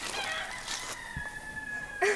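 A rooster crowing faintly, its crow ending in one long held note.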